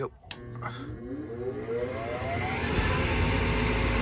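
A sharp click about a third of a second in, then the 2002 Goodman 80% furnace's draft inducer motor starts and spins up with a steady rising whine, growing louder as it comes up to speed. This is the first step of the heating sequence on a call for heat, with the thermostat terminals R and W jumpered.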